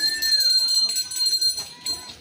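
A bright, high metallic jingling, as of small bells being shaken, that breaks off briefly near the end, with faint voices underneath.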